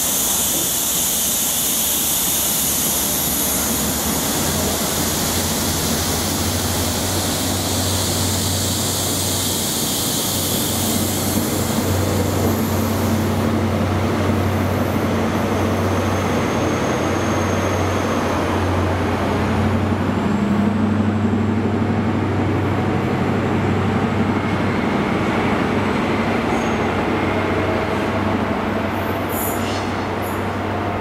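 First Great Western High Speed Train's Mark 3 coaches rolling slowly past along the platform. A high hiss of wheels on rail fades after about twelve seconds, while a steady low drone runs on throughout.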